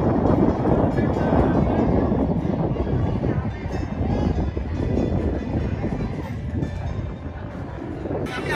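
Wind buffeting the microphone: a loud, low, rushing noise with no clear tone, stopping just after the end.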